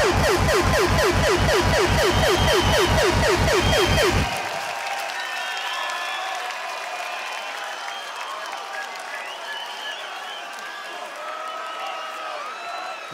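Hip-hop backing track of fast, repeated bass drum hits, about five a second, each falling in pitch, cutting off sharply about four seconds in. A large open-air crowd then cheers and applauds.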